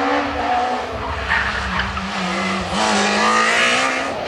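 Ford Fiesta rally car's engine running hard at high revs on a tarmac stage, its note shifting with throttle and gear changes and rising about three quarters of the way through as the car accelerates.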